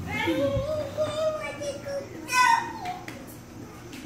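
A child's high voice, drawn out and sing-song for about two seconds, then a shorter, higher call that falls away.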